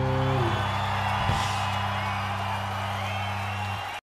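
A rock band's final chord on electric guitar and bass held and ringing out at the end of a song, with a large festival crowd cheering and whooping over it. It cuts off suddenly near the end.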